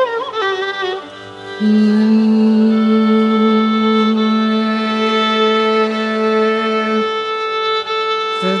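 Carnatic violin playing an alapana phrase in Keeravani raga: a short, ornamented, wavering run, then one long steady note held for about five seconds, over a tanpura drone.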